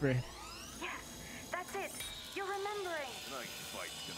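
Animated-show soundtrack: background music with sound effects and a brief voice, including a rising swoosh about a second in.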